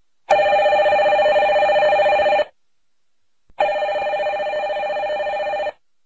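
Desk telephone ringing twice, each ring about two seconds long with a fast trilling warble, about a second apart.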